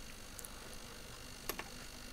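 Faint room tone with a single sharp click about one and a half seconds in, and a couple of fainter ticks before it.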